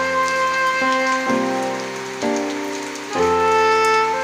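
Steady rain falling on wet concrete and grass, heard under a slow instrumental melody of held notes that softens briefly around the middle.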